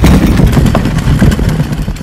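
Tyres of a solar-assisted recumbent cycle rolling over a rough gravel track with the motor off: a loud, steady crunching rumble with small rattles, easing off near the end.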